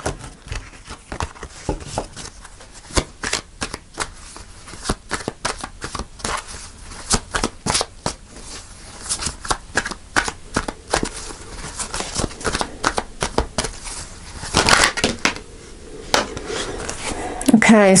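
A deck of tarot cards being shuffled by hand: a continuous run of quick, irregular papery clicks and slaps as the cards slide and knock together, with a louder flurry about fifteen seconds in.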